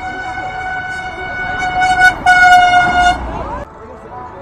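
Vehicle horn sounding a long, steady blast, which gets much louder about halfway through as two loud honks with a short break between them, then stops shortly before the end.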